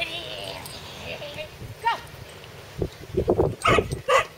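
A dog gives one rising whine, then barks several times in quick succession, loudest near the end. It is being held at the start line just before its release into an agility run.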